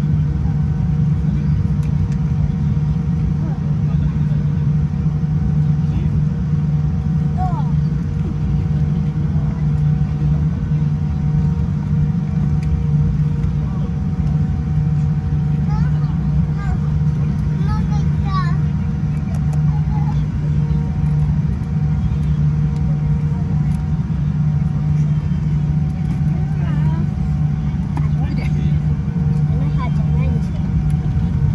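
Cabin noise inside a Boeing 787-10 airliner taxiing: a steady low drone from the idling engines and cabin air, with a few faint steady whining tones above it. Faint voices are heard a few times.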